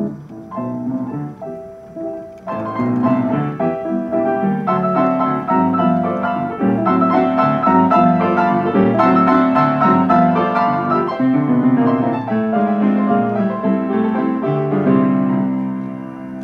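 Sherman Clay grand piano playing by itself from its Marantz Pianocorder cassette player system, a lively tune of quick chords and melody. It plays softer for the first couple of seconds, then louder from about two and a half seconds in.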